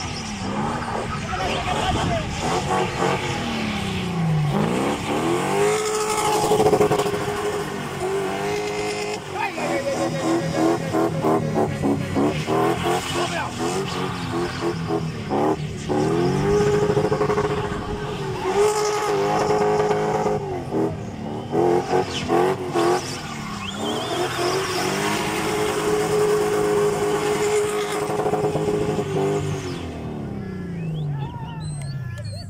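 A car engine revved hard and held high for long stretches, dropping and climbing again between them, as the car spins doughnuts on a dirt road, with tyre noise under it.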